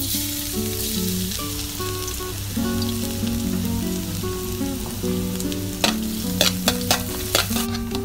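Minced garlic sizzling in hot oil in a metal wok, the sizzle starting as it goes in. From about six seconds in, a metal spatula clinks and scrapes against the wok several times as it stirs.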